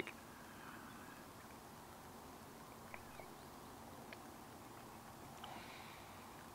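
Near silence: a faint steady outdoor background hiss with a few faint, brief ticks around the middle.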